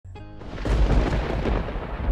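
Thunder rumbling: a deep, rolling rumble that swells about half a second in and stays loud. A brief steady musical tone sounds at the very start.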